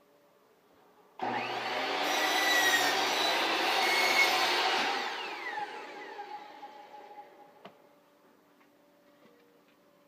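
Electric miter saw switched on with a sudden start, cutting through a cedar board for about four seconds, then spinning down, its pitch falling as it fades.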